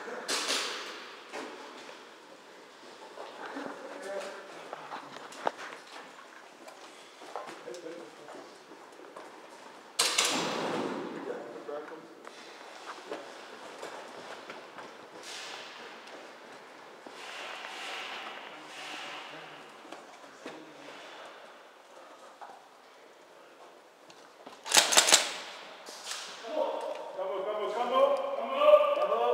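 Indistinct voices and scattered knocks of movement, broken by a loud, sudden noise about ten seconds in and a sharper, louder one near the end.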